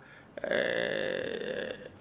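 A man's drawn-out, gravelly hesitation sound, like a long creaky 'ehh'. It starts suddenly about a third of a second in and holds for about a second and a half.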